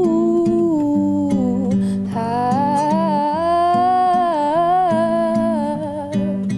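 A young woman's voice singing a slow melody, accompanied by a nylon-string classical guitar played with the fingers. One sung phrase ends about two seconds in, and the next rises into a long held note that closes near the end.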